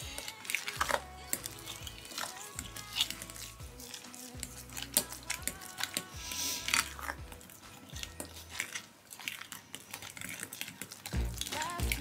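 Background music, over a metal spoon scraping and clicking against a glass bowl as a thick, doughy mixture is stirred.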